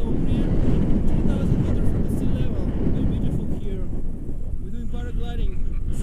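Wind buffeting the microphone, a steady low noise with no let-up, typical of a camera carried in the open air on a paragliding tandem flight; short bits of speech come through over it.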